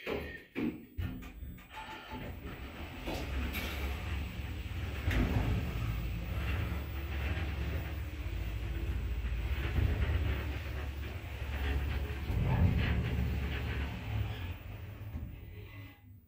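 Orona machine-room-less traction lift car travelling: a few clicks as it sets off, then a steady low rumble that builds over the first few seconds, holds while the car runs between floors, and fades out near the end as it slows to a stop.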